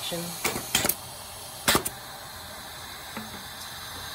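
Four linked Hibar 4F-3C pneumatic piston filling machines cycling on compressed air while running almost dry: sharp clicks of the air-driven pistons and rotary valves, three in the first two seconds at irregular spacing, over a steady air hiss.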